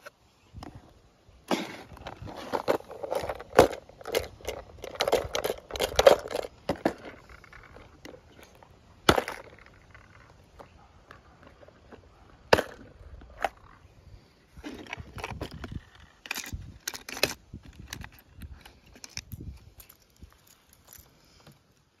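Hard plastic tackle box and clear plastic lure box being handled: drawers and lids clicking, tapping and rattling, with lures shifting inside. The handling is busy for several seconds, then comes as single clicks, then another flurry, thinning out near the end.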